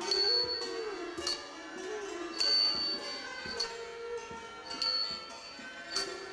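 Thai classical ensemble music accompanying a dance: a melody over the regular beat of small hand cymbals (ching), struck about every 1.2 s, with every other stroke left ringing and the strokes between cut short.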